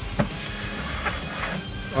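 Steady low hum and hiss of background noise, with a single short click about a fifth of a second in.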